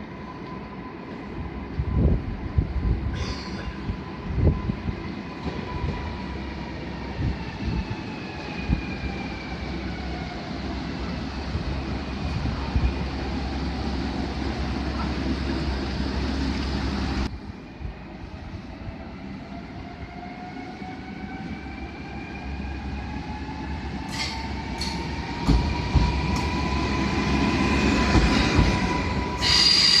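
Newag Impuls electric multiple unit braking into a station, its motor whine gliding down in pitch over the first half. After a cut, the train pulls away with the whine rising in pitch. Sharp wheel squeal comes near the end.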